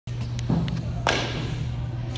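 A phone being handled and set down on artificial turf: two knocks about half a second apart, the second sharper, with a few faint clicks, over a steady low hum.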